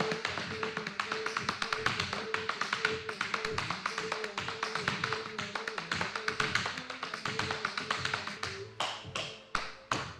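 Tap shoes striking a wooden dance floor in a fast, dense run of taps over backing music with a short repeating note pattern. Near the end the taps thin out to fewer, spaced strikes.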